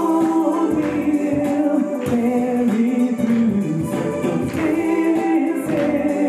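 Gospel song: a man singing into a microphone over musical accompaniment, holding long sustained notes.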